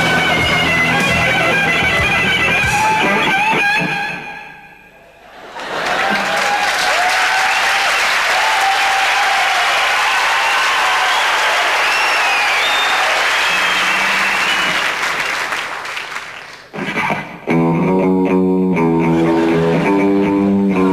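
Electric guitar rock music with bending lead notes that fades out about four seconds in, followed by about ten seconds of audience applause. Music starts again near the end with a steady pattern of repeated chords.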